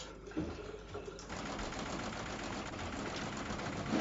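A small engine running steadily with a fast, even mechanical rattle that starts about a second in.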